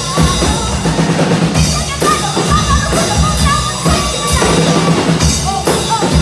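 Live rock band playing: a drum kit keeps a steady beat under electric and acoustic guitars and bass, with a wavering melody line on top.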